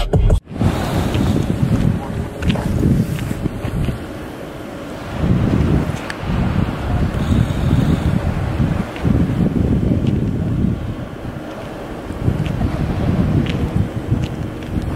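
Music cuts off about half a second in, giving way to wind buffeting the microphone in uneven gusts, with the wash of ocean surf underneath.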